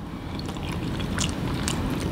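A person chewing a mouthful of ramen noodles in sauce, with a few small mouth clicks.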